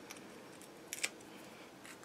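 Faint crafting handling sounds: a few soft clicks as the paper backing is peeled off small foam adhesive dimensionals, the clearest about a second in.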